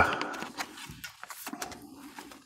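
A baseball card sliding into a clear plastic nine-pocket binder page: faint, scattered rustles and small plastic ticks.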